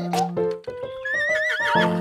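A cartoon horse whinnying, one wavering neigh starting about a second in and falling away near the end, over children's song music.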